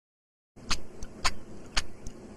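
A cartoon car's engine running as it pulls out, a low rumble with sharp clicks about twice a second, starting about half a second in.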